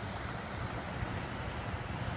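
Steady outdoor noise: an even rushing hiss over a constant low hum, with no distinct events.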